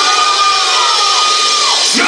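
Live rock band playing loud in a hall: a long held high note bends downward near the end over crowd noise, with the heavy low end of the band thinned out.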